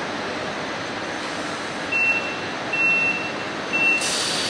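Steady hum of a stationary double-deck S-Bahn train, then from about halfway through three long beeps at the same high pitch, about a second apart: the train's door-closing warning tone.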